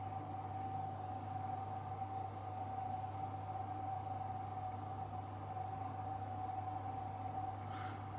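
Steady background hum with a thin, constant higher tone over it and no other sound: room tone.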